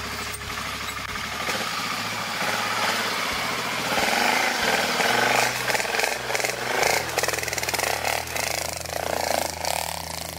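BMW F650 GS Dakar's single-cylinder engine running at low revs, its note shifting a few times as the motorcycle rides through a shallow ford, with water splashing up from the wheels from about four seconds in.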